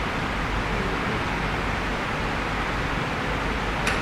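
Steady background hiss of room tone picked up by an open lectern microphone, with one brief click near the end.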